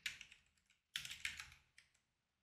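Faint typing on a computer keyboard: a couple of keystrokes at the start, then a short cluster of them about a second in.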